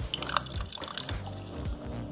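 Background music, with orange juice dribbling and dripping into a plastic cup as an orange is squeezed by hand.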